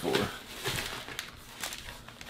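Foil sweet wrapper crinkling softly as it is handled, a few light crackles spread through the moment.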